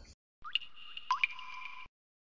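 Short edited-in transition sound effect: two quick rising water-drop-like bloops over a held electronic tone, lasting about a second and a half and cutting off abruptly.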